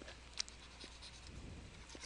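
Faint scratching and light taps of a stylus writing on a tablet, with one slightly louder tap about half a second in.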